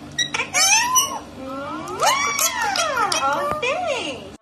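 An Indian ringneck parakeet vocalising at a phone, mixed with a woman's high squeals from the phone's speaker. There are quick high chattering chirps about half a second in, then a long squeal that rises and falls at about two seconds, and a shorter one near the end.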